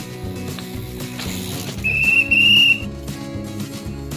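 A high whistle blast lasting about a second, in two parts with a short break, over steady background music.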